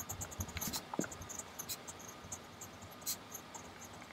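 Lamy Al-Star fountain pen's steel 1.1 mm stub nib scratching across grid paper as words are written: a quiet, irregular run of short pen strokes.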